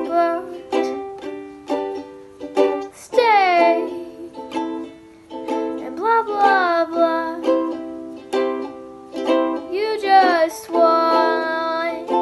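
Fender ukulele strummed in a steady rhythm of chords, with a girl singing a few long, sliding sung phrases over it, one about three seconds in, one in the middle and one held near the end.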